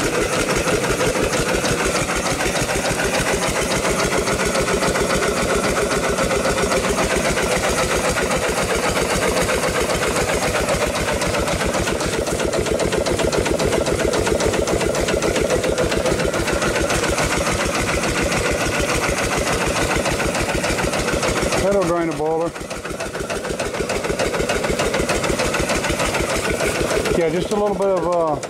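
Upright steam engine running under steam with the throttle opened up: a fast, even beat of piston strokes over continuous steam hiss, briefly quieter about 22 seconds in. There is a knock which the owner thinks may come from the eccentric.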